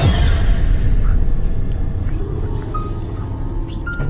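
Horror-style intro music for the channel's title card: a deep, steady rumble under eerie music.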